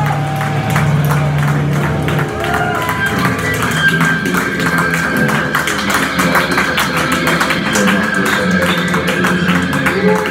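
Live rock band playing loudly: electric guitars strummed over drums, with a high note held from about a third of the way in.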